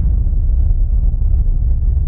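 Loud, deep, steady rumble of a cinematic title-sequence sound effect.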